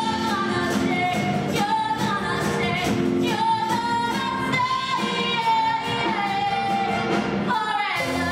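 Song from a live stage musical: a woman's voice singing long held notes over band accompaniment with a steady beat.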